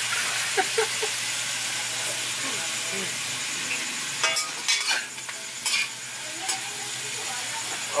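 Freshly added sliced eggplant sizzling steadily in hot oil in a wok. A metal spatula scrapes and stirs it with a few sharp strokes around the middle.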